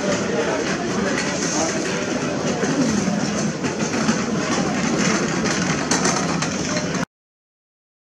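Busy street ambience: people talking in the background over the steady hum of a vehicle engine. It cuts off suddenly about seven seconds in, leaving silence.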